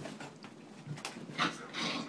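Miniature schnauzer and Maltipoo playing: three or four short, noisy dog sounds, the loudest about one and a half seconds in.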